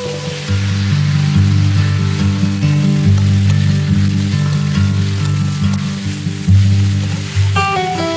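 Chopped gourd sizzling in hot oil and spices in a kadhai as it is tipped in and stirred, under background music with low held notes that is louder than the frying.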